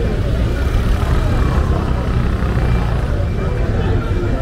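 Busy street ambience: many people talking at once, with no single voice standing out, over a steady low rumble.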